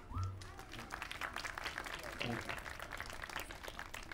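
A small crowd applauding, with faint, scattered clapping.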